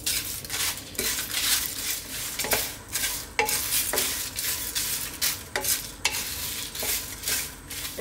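A spatula stirring and scraping whole spices around a dry nonstick wok, the seeds and pods rattling against the pan in a quick, uneven run of strokes as they toast.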